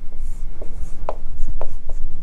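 Marker writing on a whiteboard: a quick run of short strokes and taps of the tip, over a steady low room hum.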